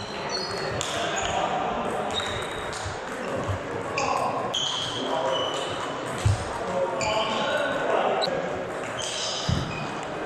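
Table tennis ball clicking back and forth between bats and table in a rally, a few short high clicks a second, echoing in a large sports hall over background voices. A couple of low thuds, one about six seconds in and one near the end.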